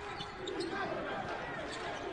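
Faint on-court game sound in a large, sparsely filled arena: a basketball dribbled on the hardwood floor, with low distant voices.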